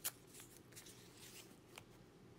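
Faint paper handling: a short, sharp rustle of a paper scrap at the start, then a few soft ticks as the scrap is pressed onto a collage journal page, with near silence between.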